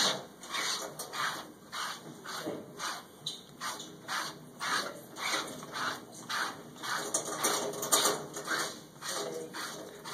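Scrubbing mittens rubbing over a puppy's wet coat in quick, even strokes, about two a second.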